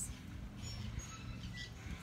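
A few brief, faint, high bird chirps over a quiet, steady low background hum.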